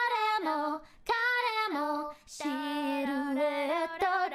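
A young woman's voice singing a cappella, three sung phrases broken by short breaths about one and two seconds in.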